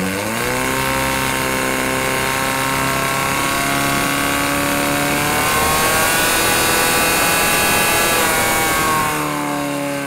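Portable fire pump's engine revving up and running at high, steady revs while it pumps water out to the hose lines. The revs climb a little higher about halfway through, then drop back over the last two seconds.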